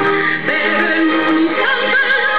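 A sung hymn: a voice with a wavering vibrato over sustained instrumental accompaniment.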